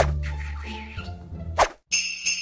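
Sharp metallic clang-like hit, then a low steady hum, then a second sharp hit just before a brief cut-out: an edited glitch-transition sound effect.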